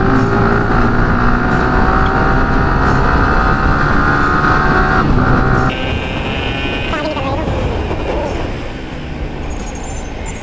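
Motorcycle engine pulling steadily in gear through traffic, its pitch slowly rising for about five seconds before it eases off, with road and wind noise. A brief higher tone comes in about six seconds in.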